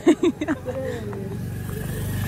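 A motorcycle engine running close by, a low steady rumble that grows louder toward the end, after a brief burst of voices at the start.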